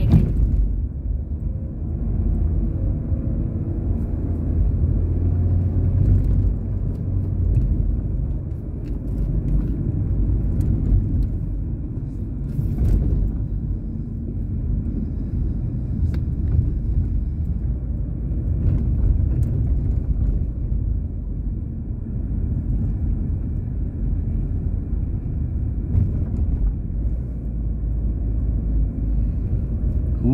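Steady low rumble of a car's engine and tyres heard from inside the cabin while driving along a city street, with a few faint clicks.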